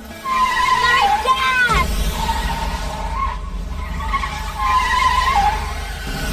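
Car tyres squealing and skidding on asphalt, in two bouts: one in the first two seconds and another about five seconds in. A deep car engine rumble comes in under them a little under two seconds in and keeps going.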